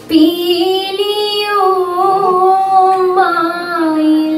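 A woman singing a Margamkali song in long held notes that slide up and down in pitch, coming in suddenly right at the start.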